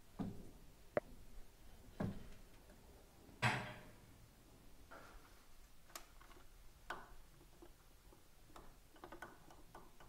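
Faint, scattered metallic clicks and taps from hands handling the exposed rocker arms and valve-train parts of a Harley-Davidson Twin Cam engine, a few sharp ticks seconds apart.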